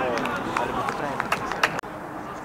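Voices shouting during a football match, then a quick run of about six sharp knocks and clicks. The sound drops out abruptly for a moment near the end.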